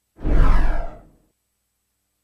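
Editing-transition whoosh sound effect: a single swoosh about a second long, with a deep low rumble under it, as a title graphic comes in.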